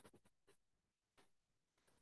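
A few faint, short chalk scratches on a blackboard, spread through an otherwise near-silent room.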